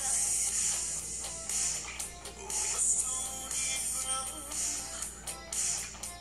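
Music playing steadily, loud enough to dance to.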